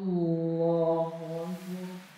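A man's voice chanting a long, drawn-out takbir, "Allahu akbar", held on an almost steady pitch for about two seconds. It is the imam's call for the congregation to go down into prostration.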